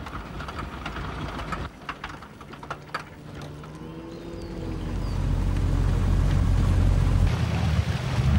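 A motorboat's engine running with a low, steady hum that grows louder from about halfway through as the boat draws near. Before it, water noise and a few light knocks.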